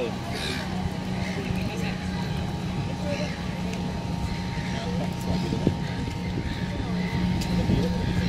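Background voices of people talking at a distance, too faint to make out. Under them runs a steady low mechanical hum with a thin, high, steady tone.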